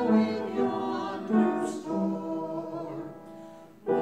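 Church congregation singing a hymn together in held notes, with a short break between lines near the end before the next line begins.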